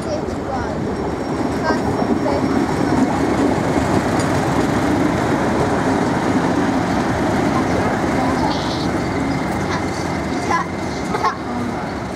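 British Rail Class 31 diesel locomotive 31285 passing close by, its English Electric 12SVT V12 diesel engine running in a loud, steady drone that builds in the first second and eases slightly as it draws away. A couple of sharp clicks come near the end.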